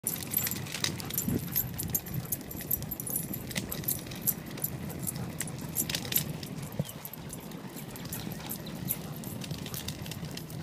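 Metal dog tags and leash clips jingling irregularly with the dog's movement, over a steady low rumble of moving along the pavement.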